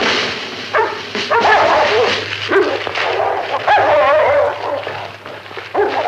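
Several dogs barking, with short overlapping calls starting about a second in, easing off past the middle, and another bout near the end.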